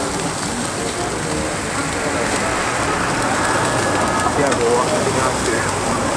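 Jerk chicken sizzling over open flames in a jerk pan, a steady hiss with the fire crackling.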